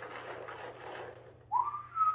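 A man whistling: a quick upward glide about one and a half seconds in that settles on a held high note, after a second or so of soft rustling as the cardboard box is handled.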